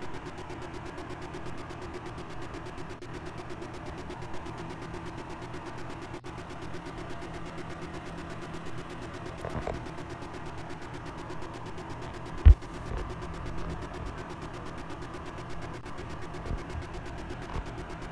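Steady low hum of an idling engine, with a single dull thump about twelve and a half seconds in.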